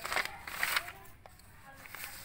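Sheets of photocopy paper rustling as they are handled and shuffled, loudest in about the first second and then dropping to a faint rustle with a couple of light taps.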